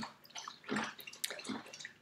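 Dog lapping water from a bowl in the background: a run of faint, short, irregular wet laps.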